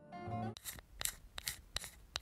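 A short musical note dies away, then comes a quick run of about six sharp, irregularly spaced clicks or snips, like a snipping sound effect.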